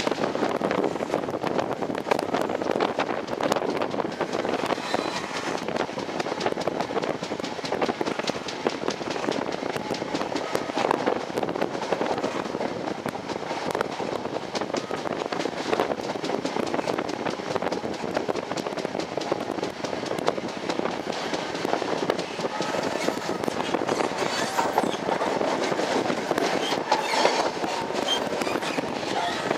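Passenger train running at speed, heard from on board: a steady rush of wheels on rail with a fine, rapid rattle of clicks throughout.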